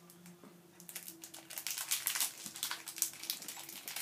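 Quick light clicks and rustling from small objects being handled, starting about a second in, over a faint steady hum.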